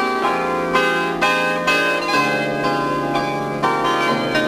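Bandura played solo, plucked chords struck about twice a second and left ringing over a low held bass note that changes pitch twice.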